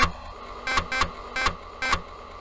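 Short electronic music sting: beeping tones over regularly spaced percussive hits, of the kind played under an animated logo intro.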